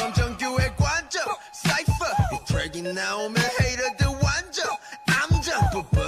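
A Korean-language rap verse over a hip hop beat with a heavy kick drum.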